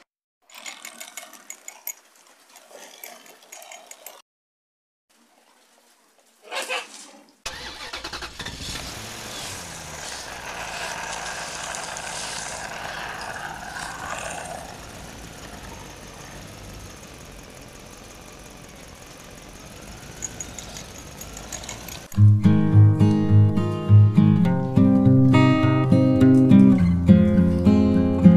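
A steady engine-like running sound with a wavering whine over it, after a few faint scattered sounds and a brief silence. It gives way, about two thirds of the way through, to loud strummed guitar music.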